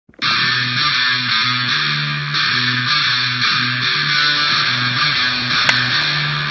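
Original background music made in GarageBand, with a repeating bass line; it starts a fraction of a second in.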